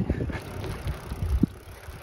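Bicycle rolling along a paved path: a steady low rumble of tyres on the pavement, with a few small clicks and rattles from the bike.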